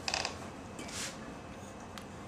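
Faint handling noise: a brief rustle at the start and a soft scrape about a second in, over quiet room tone.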